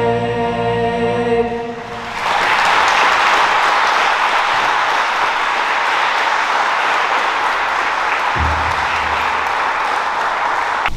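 The last held note of the national anthem, sung, ends about two seconds in. An audience of a few dozen people then breaks into steady applause.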